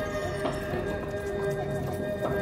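Live electro-acoustic music: several steady droning tones at different pitches, with irregular clattering knocks and clicks from sampled acoustic material.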